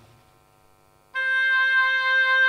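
Near silence, then about a second in a held oboe note played back over loudspeakers starts and holds steady. Its fundamental is weak and its third harmonic is the strongest, which gives the oboe its nasal colour.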